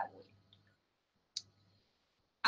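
A single sharp click about one and a half seconds in, as the presentation slide is advanced; otherwise near silence.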